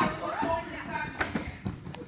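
Children's high voices with a few thuds and knocks from kids running and jumping onto foam gymnastics mats, the sharpest knock near the end.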